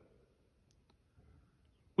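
Near silence with a few faint clicks about a second in.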